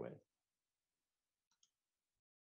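Near silence after a spoken word ends, with one faint, short click about a second and a half in.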